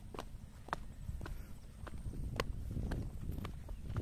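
Footsteps on bare rock and dry grass, sharp clicks at a walking pace of about two steps a second, over a low rumble.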